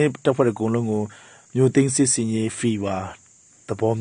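A man speaking in Burmese, with a short pause near the end.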